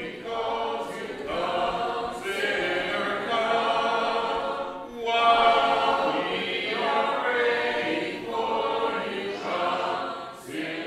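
A congregation singing a hymn a cappella, many voices together in unaccompanied harmony, in long phrases with short breaks between them: the invitation song at the close of a sermon.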